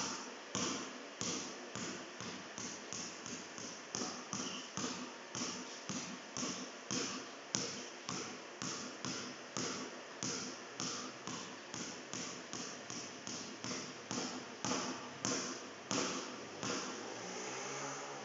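Basketball dribbled low and quick on a concrete court floor, a steady run of bounces at about three a second that stops near the end.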